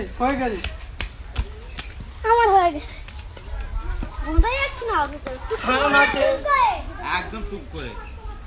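Children's high-pitched voices shouting and calling out to each other in an outdoor game, with one sharp knock about four and a half seconds in.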